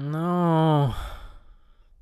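A man's long voiced sigh: a held tone that drops away about a second in and trails off into a breathy exhale.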